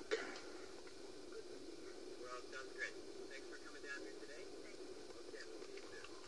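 Low steady hum with faint, indistinct small sounds about two to three and a half seconds in.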